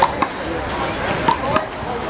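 Sharp smacks of a small rubber handball being struck by hand and hitting the wall: two quick hits at the start and another just over a second in. Spectators chatter behind them.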